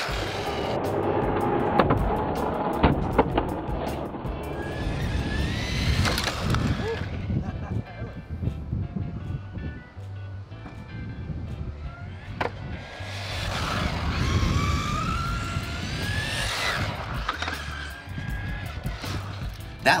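Electric motor of a 4x4 RC truck on a 2-cell LiPo whining as it accelerates hard, rising in pitch several times, with tyre noise on asphalt, over background music with a steady bass line.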